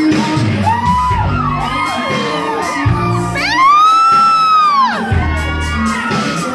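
Nightclub crowd cheering and screaming over loud music with heavy bass, with one long rising-and-falling scream in the middle as the loudest sound.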